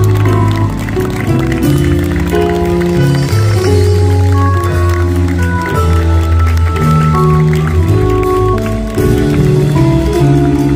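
Live pop-rock band playing a song through a PA: electric guitars, bass, keyboard and drums, recorded from within the audience.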